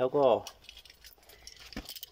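A short spoken phrase, then a few faint, light clicks and rattles from hands handling a length of old white electrical cable.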